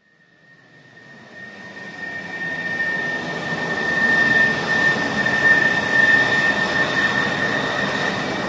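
Jet airliner engines: a rushing noise with a steady high whine, swelling up from silence over the first four seconds and then holding loud.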